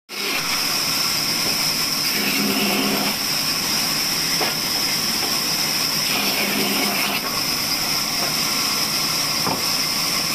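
Large vertical band saw running and cutting through a chunk of wood fed by hand: a steady hiss with a high steady tone over it, the cutting sound changing briefly about two and six seconds in.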